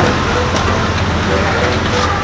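Steady low vehicle rumble with faint voices in the background.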